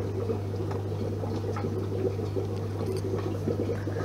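Aquarium sponge filter bubbling: a quick, irregular patter of small air bubbles breaking in the water, over a steady low hum.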